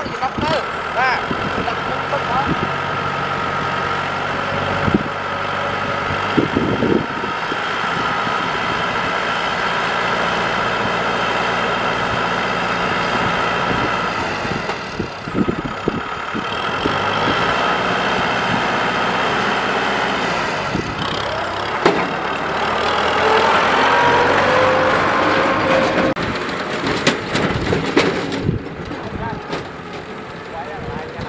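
Kubota M6040SU tractor's diesel engine running steadily as the tractor drives slowly over stubble, with a few knocks and clatters. The engine note rises and gets louder for a few seconds about three-quarters of the way through.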